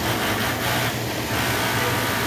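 Industrial multi-needle sewing machine running steadily, a continuous whir over a low hum, as it top-stitches elastic onto bra fabric.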